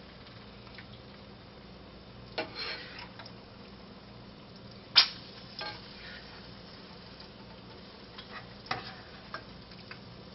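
A serving spoon scraping and clacking against a skillet as gravy is spooned onto a plate, in a few scattered strokes with one sharp clack about halfway through. An egg frying in a pan sizzles faintly underneath.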